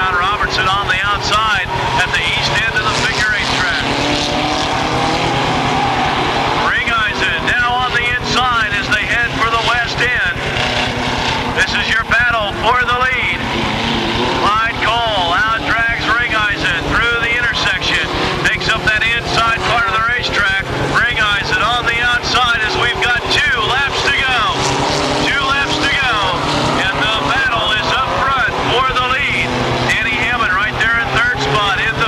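Several mini stock race cars' small four-cylinder engines running hard together, their pitch rising and falling over and over as they rev and lift through the turns.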